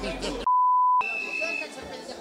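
A single censor bleep: one steady, pure beep tone of about half a second that replaces all other sound while it lasts. A fainter, higher tone follows briefly, over faint background chatter.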